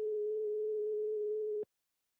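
Telephone ringback tone on an outgoing mobile call: one steady tone about a second and a half long that cuts off sharply, the sign that the called phone is ringing.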